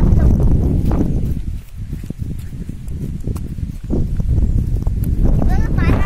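Footsteps on ploughed field soil: a run of short, uneven thuds. A low rumble fills the first second and a half, and a voice is heard briefly near the end.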